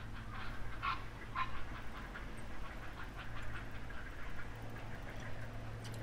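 Waterfowl calling: a few short, louder calls in the first second and a half, then scattered fainter calls, over a steady low hum.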